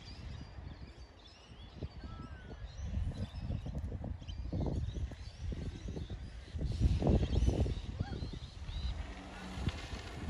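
Wind buffeting the microphone in uneven gusts, the strongest about seven seconds in, with birds chirping faintly in the background.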